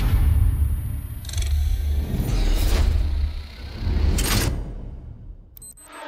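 Trailer sound design: a deep bass rumble with three short hits rising over it, fading out about five seconds in. Just before the end a digital wristwatch gives a few short high electronic beeps.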